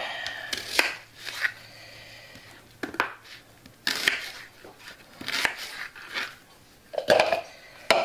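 Chef's knife slicing an onion on a plastic cutting board: separate, irregularly spaced cuts, each ending in a sharp knock of the blade on the board, with a louder cluster near the end.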